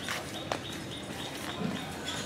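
Footsteps of people walking in sandals on paving, with a couple of sharp clicks in the first half-second. A bird chirps in a quick series of short, evenly spaced high notes.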